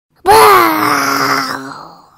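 A spooky, ghostly moaning voice: one long wail that rises briefly, then slides down in pitch and fades away over about a second and a half.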